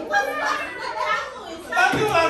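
A group of adults and children talking and calling out over one another, several voices at once.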